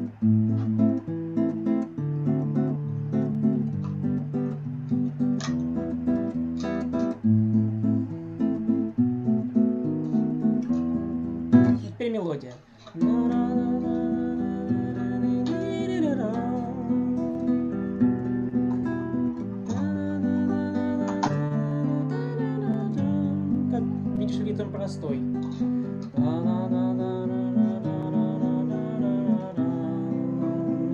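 Acoustic guitar playing chord accompaniment to a song, the chorus taken in a different rhythm from the fingerpicked verse. The playing briefly breaks off about twelve seconds in.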